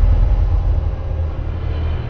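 Cinematic logo-intro sound design: a deep, sustained bass rumble, loudest in the first second and easing off a little after.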